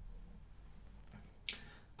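Quiet room tone with a faint low hum, then one short sharp mouth click about one and a half seconds in as the narrator draws breath to speak.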